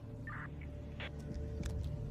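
Low sustained drone of a dark film score, with a short electronic beep about a quarter second in as the mobile-phone call ends.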